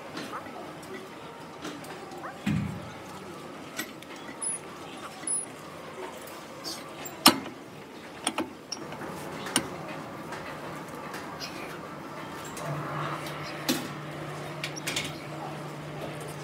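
Scattered sharp clicks and knocks of gym equipment, likely the lat pulldown machine's cable, bar and weight stack, with a dull thud early on and voices faintly in the background; a steady low hum comes in about three-quarters of the way through.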